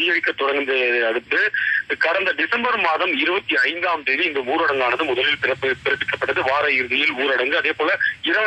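Speech only: one voice talking continuously, with only brief breaks between words.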